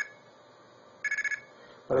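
Red box payphone coin tones from an Arduino blue box, played through an old telephone earpiece used as a speaker. They are two-tone beeps of about 1700 and 2200 Hz. A short beep ends right at the start, and about a second in comes the quarter signal, a fast run of beeps lasting about a third of a second.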